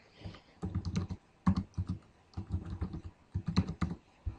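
Typing on a computer keyboard as a username and a password are keyed in: quick runs of key clicks with short pauses between them.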